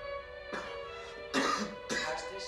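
A person coughing three times, short harsh coughs with the middle one the loudest, over soft string music.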